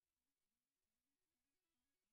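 Near silence: the stream's audio is effectively muted.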